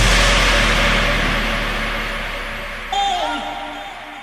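Dubstep track just after a drop: a held sub-bass note and a wash of noise die away together after the last bass hit. About three seconds in, a short pitched synth sample with a downward bend cuts in.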